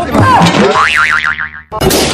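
Cartoon-style comedy sound effects edited onto the track: springy boings with falling pitches, then a boing whose pitch wobbles rapidly up and down about a second in. It cuts off briefly near the end before another starts.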